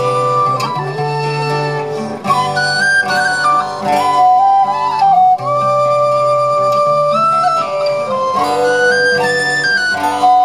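Celtic folk tune played live: flutes carry a quick melody over acoustic guitar accompaniment.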